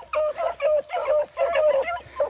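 Beagle hounds on a rabbit track, giving a quick unbroken string of short, high chop-mouth barks, several a second.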